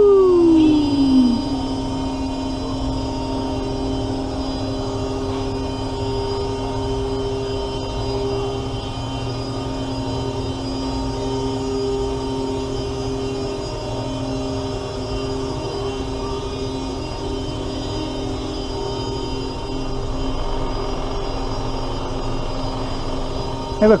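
Paratrooper ride running with a steady droning hum from its motor and drive as the gondolas circle. A rider's "woo!" falls in pitch right at the start.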